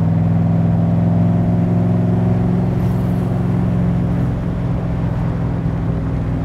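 Roush 427 stroker V8 of a Backdraft Shelby Cobra running steadily through its side pipes as the car cruises on the road. The upper part of the note eases slightly about four seconds in.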